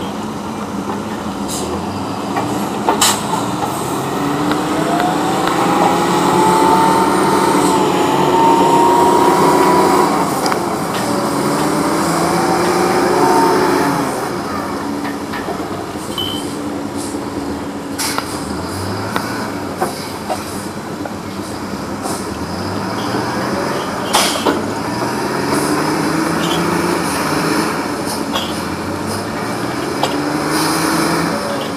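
Diesel engines of a cable logging yarder and grapple machine running under load, revving up and down over and over as logs are hauled up the slope by cable, with a higher whine rising in pitch alongside. A few sharp clanks stand out above the engine noise.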